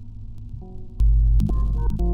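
Electronic music from the Pilot synthesizer sequenced by Orca: a low sustained bass tone with a few held notes, jumping much louder about a second in, then short synth notes and clicks entering over it.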